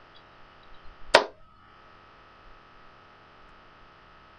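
A single sharp click about a second in, with a few faint handling knocks just before it, over steady faint hiss and a thin steady electrical whine.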